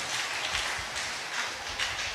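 Audience applause, an even patter of many hands clapping at a moderate level.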